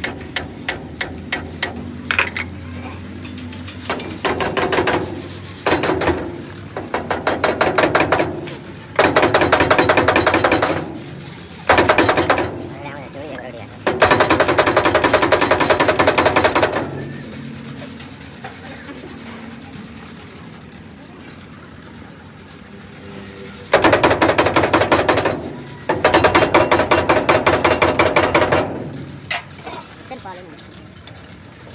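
Repeated bursts of very fast metallic clicking and rattling, each one to three seconds long, from hand-tool work on a large hydraulic cylinder. A quieter stretch falls in the middle.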